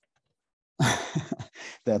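Silence for most of the first second, then a man's audible sigh: a breathy exhale that runs into a low voiced sound, just before he starts to speak.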